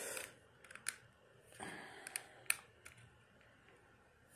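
Faint handling noise with a few sharp small clicks and a brief rustle: a wireless mouse's USB receiver being pulled from one port and pushed into the projector's USB port.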